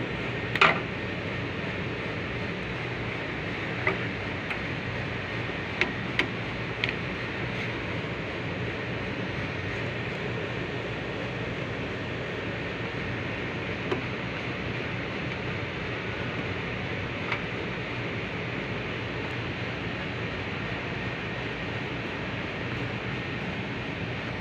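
A few sharp, scattered clicks and taps of a screwdriver working the wire terminals of an air-conditioner outdoor unit's magnetic contactor, over a steady mechanical hum and noise.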